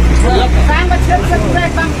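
Men's voices talking in a street interview over a steady low rumble.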